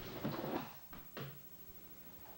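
Thuds and slaps of an aikido throw as the partner lands on the mat, with two sharp hits about a second in.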